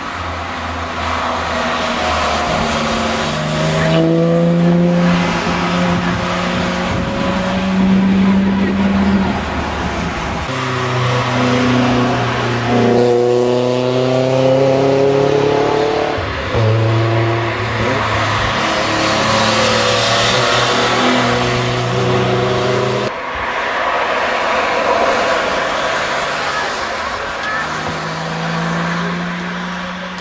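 Porsche 911 GT cars' flat-six engines driving past one after another under power, the engine note rising and falling with the revs and gear changes.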